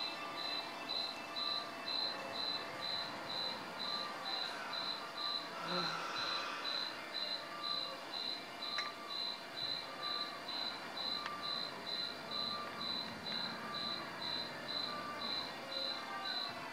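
A cricket chirping steadily, about two short high chirps a second.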